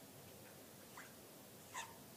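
Near silence, with two faint short squeaks of a marker pen writing on paper, one about a second in and one near the end.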